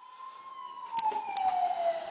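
A police siren wail, one long tone sliding slowly down in pitch.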